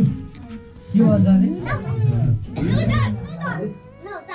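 Several people's voices, among them a child's, talking over faint background music.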